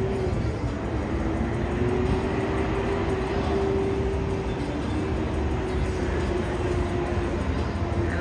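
Steady city traffic noise rising from a busy street below, a continuous rumble. A single steady hum-like tone runs through it and stops near the end.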